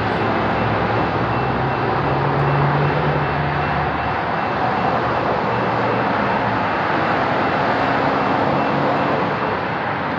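Road traffic on a multilane boulevard: a steady rush of tyres and engines from passing cars and pickups, with one engine's hum swelling about two to four seconds in.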